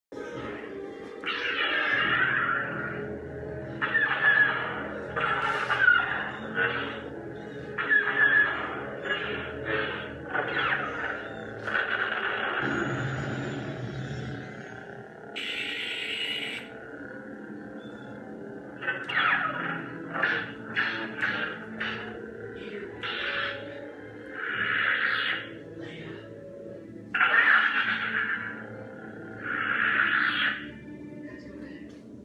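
Neopixel lightsaber prop's sound board playing a steady electronic hum, with a run of swing swells rising and falling as the blade is moved, and one brief sharp clash burst about halfway.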